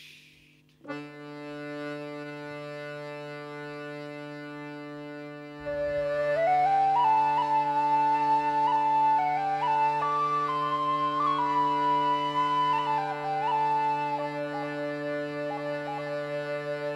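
Accordion holding a steady drone chord, joined about six seconds in by a louder tin whistle melody with sliding, ornamented notes, the slow opening of an Irish folk-punk song.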